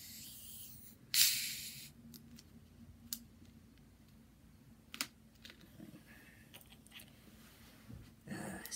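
Screw cap of a bottle of Cinnamon Coke being twisted open: a short, sharp hiss of escaping carbonation about a second in, then two faint clicks as the cap keeps turning.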